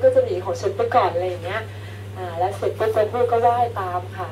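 A woman speaking into a microphone, lecturing in Thai, with a steady low hum underneath.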